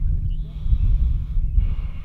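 A man breathing out heavily through his nose while he eats: one long breath, then a shorter one near the end, over a low rumble of wind on the microphone.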